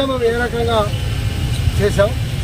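A man speaking in short phrases: one phrase in the first second, a brief pause, then speech again near the end, over a steady low background rumble.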